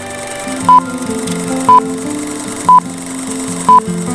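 Light background music with a short, loud single-pitch beep once a second, four times, like a timer counting off the answer time between quiz questions.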